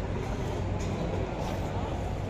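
Many people in boots walking together on a concrete floor, their scattered footsteps over a steady low rumble.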